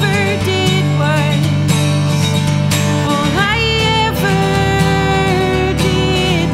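A woman singing with her own strummed Taylor acoustic guitar, the voice gliding between held notes over sustained chords.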